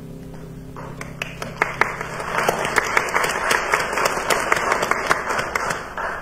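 A congregation applauding: dense, irregular hand claps that start about a second in, build, and die away near the end.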